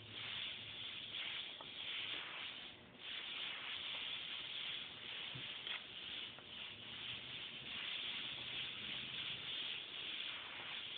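Airbrush hissing as it sprays paint, fed at about thirty-five to forty psi, the hiss swelling and easing with the trigger and stopping briefly about three seconds in.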